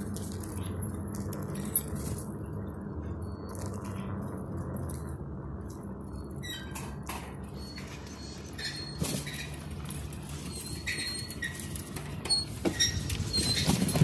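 A bicycle rolling over paving, a steady low rumble with small rattles and clicks from the bike. From about halfway on there are short high squeaks.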